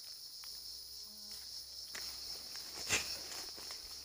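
Steady high-pitched chorus of insects, with a few faint ticks and one sharp snap about three seconds in.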